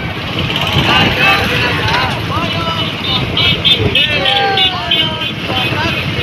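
Motorcycle and scooter engines running at low speed in a street rally, with voices calling out over them.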